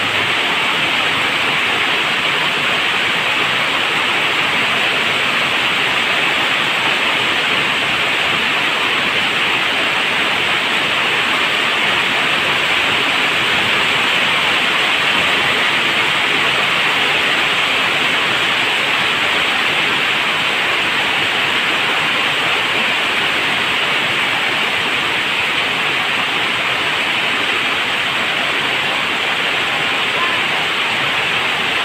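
Heavy rain pouring down on leaves and ground: a loud, steady, dense hiss that never lets up.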